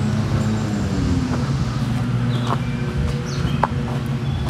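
A steady low engine hum, as of a motor vehicle running close by, with a few faint short chirps in the middle and later part.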